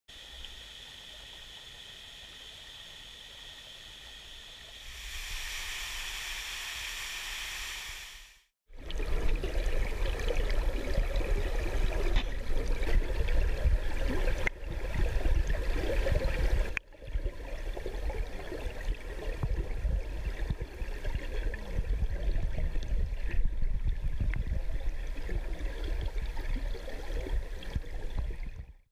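Water rushing and churning as picked up by a camera held underwater, full of bubbling and a heavy low rumble, with a short break partway through. It is preceded by several seconds of faint, steady outdoor ambience that grows louder and then cuts out.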